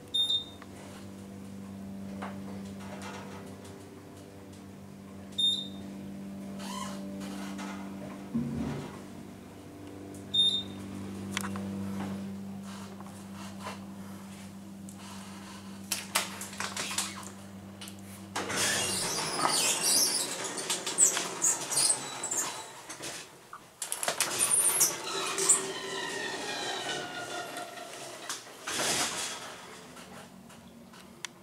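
Hydraulic elevator car running with a steady hum from its pump motor, while a short high beep sounds three times about five seconds apart. The hum cuts off after about eighteen seconds as the car stops, followed by several seconds of sliding, rumbling door noise.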